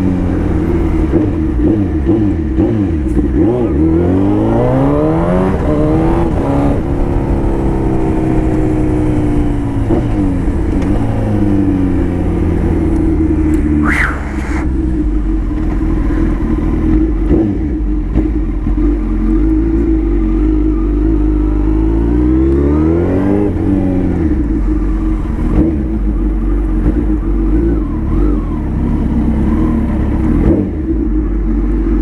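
Suzuki Hayabusa 1300's four-cylinder engine breathing through an aftermarket stainless-steel exhaust tip, heard from the rider's seat. The revs climb and fall back twice, early on and again about two-thirds of the way through, with a steady drone between. A brief high-pitched tone sounds about halfway through.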